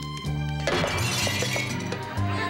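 Music with a bass line of short, changing notes. About two-thirds of a second in comes a sudden crash, and it rings on for about a second.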